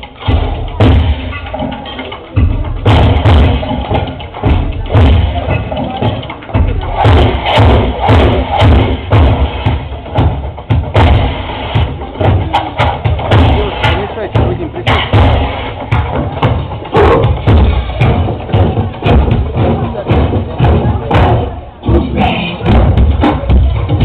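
Recorded dance music with a heavy, regular beat and a voice over it, played through loudspeakers for a dance routine.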